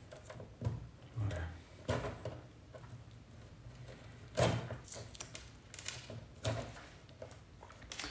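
Insulating tape being unwrapped and the wires of a car stereo's wiring harness pulled out of their plug by hand: scattered soft rustles and small crackles at irregular intervals. The loudest comes about four and a half seconds in.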